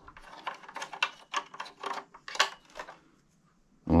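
Irregular light clicks and taps of a small VFD inverter's plastic casing and removable fan cover being handled and turned over, lasting about three seconds before stopping.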